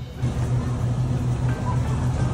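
A steady low hum from a store's refrigerated display cases, with music underneath.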